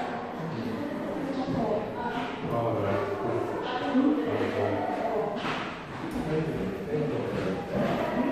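Indistinct chatter of several people talking at once, with no words made out.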